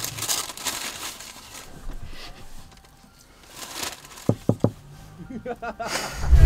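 Paper fast-food wrapper and bag crinkling and rustling while someone eats. It is loudest in the first couple of seconds and dies away by the middle.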